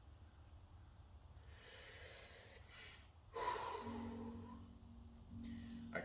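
A man breathing during an arm-swing warm-up: a soft drawn-in breath, then a louder exhale about three seconds in that trails off into a low hum.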